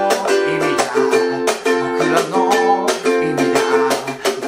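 Solo ukulele strummed in a fast eight-beat pattern with muted chop strokes, running through an Am–G7–F chord progression.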